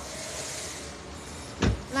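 A car door shut with one solid thump about a second and a half in, over a steady background hiss.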